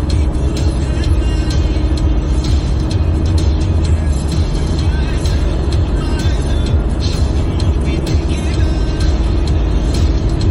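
Steady low rumble of a car driving at highway speed, heard inside the cabin, with music playing over it.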